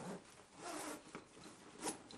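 Zipper and stiff nylon fabric of a Condor Urban Go backpack being handled: a few short raspy zip strokes and rubbing, with a sharper, louder rasp near the end.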